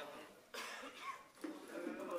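A person coughing, with a sudden sharp burst about half a second in, over low voices.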